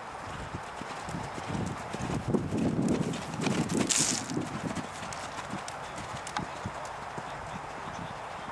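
A horse's hooves cantering on a sand arena, dull rhythmic thuds that grow louder as it approaches a jump. The loudest thuds and a brief hiss come as it jumps about four seconds in, then the hoofbeats settle as it canters away.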